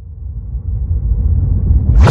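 A deep rumble swelling steadily louder and brighter, the build-up of the edited soundtrack, breaking into a loud electronic music track at the very end.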